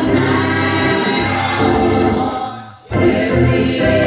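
Church congregation singing a gospel song together, many voices holding long notes, with the singing dropping away briefly just before three seconds in and coming back abruptly.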